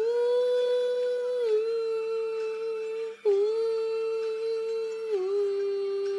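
A man's voice singing two long wordless held notes in a small room, each about three seconds, with a brief break between them. Each note steps down slightly partway through.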